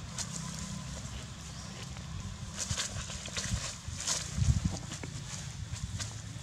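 Rustling and crackling of grass and dry leaves, busiest in the middle, over a steady low rumble of wind on the microphone, with a dull thump about four and a half seconds in.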